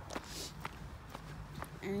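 Footsteps of a person walking at a steady pace, about two steps a second, over a faint low background rumble.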